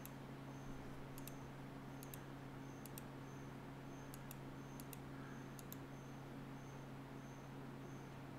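Faint clicks of a computer mouse button, about eight of them scattered irregularly, most heard as a quick press-and-release pair, over a steady low hum.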